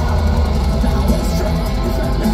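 Black metal band playing live through a festival PA, heard loud and steady from within the crowd: distorted electric guitars over a drum kit.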